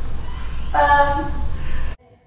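Steady rumbling noise with a short pitched cry about three-quarters of a second in; the sound cuts off abruptly near the end.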